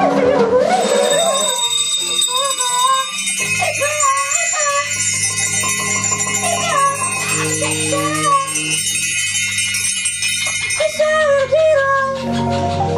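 Live free-improvised jazz ensemble music: a wavering melodic line over a shimmer of jingling, bell-like metallic percussion, with low sustained notes entering about three seconds in.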